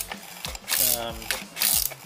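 Socket ratchet clicking in several short runs about half a second apart as it snugs down the plastic oil filter housing cap.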